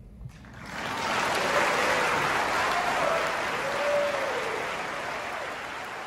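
Concert audience applauding as a song ends, the clapping swelling up about a second in and slowly dying down, with a few cheers from the crowd.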